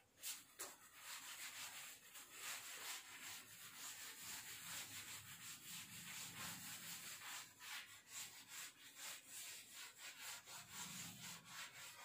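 Faint swishing of a cloth wiping chalk off a blackboard, in quick repeated back-and-forth strokes.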